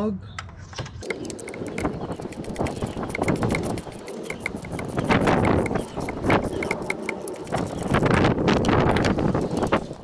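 A 3/8-inch ratchet on an extension with a 5/8-inch spark plug socket unscrews a spark plug. From about a second in there are runs of rapid ratchet clicks as the handle is swung back and forth.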